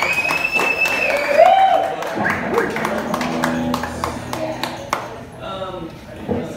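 A rock band's song ending: held electric guitar and bass notes ring out and fade, with scattered claps and voices calling out.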